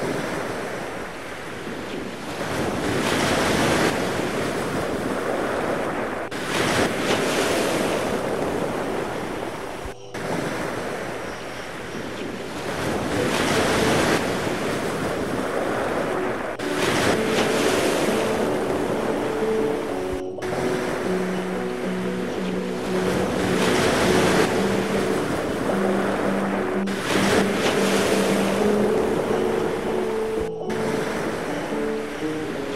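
Ocean water rushing and splashing with wind buffeting the microphone, swelling and fading every few seconds and cutting off abruptly twice. Soft music with held notes comes in underneath about halfway through.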